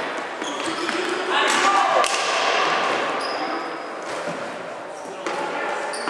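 Live ball hockey play on a hardwood gym floor: sticks and the ball knocking on the floor, with players' voices and shouts echoing in the hall; a loud shout stands out about a second and a half in.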